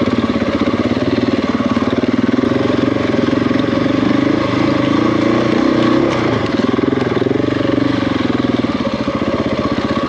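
Adventure motorcycle engine running at low revs, with small changes in pitch as the throttle is worked.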